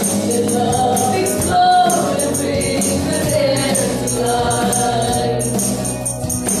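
Live gospel worship song: a woman's lead voice sings held, bending phrases with other voices joining, over the band, with a steady high percussion beat keeping time.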